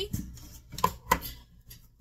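Two sharp knocks about a third of a second apart, from a can of crushed pineapple and other kitchen things being handled on the counter.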